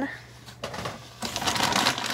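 A bag rustling and crinkling as items are pulled out of it, quieter at first and heavier in the second half.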